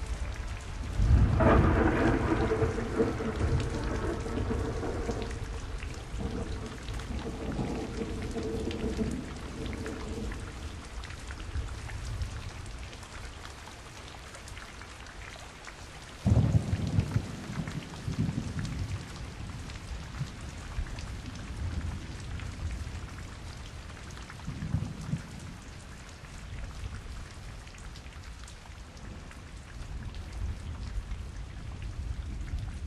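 Steady rain with rolling thunder: a loud rumble about a second in that dies away over several seconds, another about halfway through, and a smaller one near the end.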